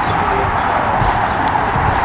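Hoofbeats of a Friesian horse moving along the rail on dirt arena footing, over a steady background hiss.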